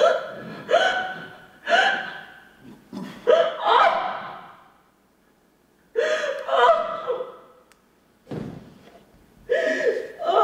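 A woman's voice making a series of short, loud, wordless gasping cries into a handheld microphone, about eight of them, each breaking off sharply, with a pause about halfway through.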